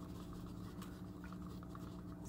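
A stir stick scraping faintly in a plastic cup, with quick, regular little ticks, as it stirs a thick mix of Floetrol, acrylic paint and water.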